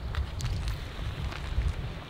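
Wind buffeting the microphone: an uneven low rumble, with a few faint clicks.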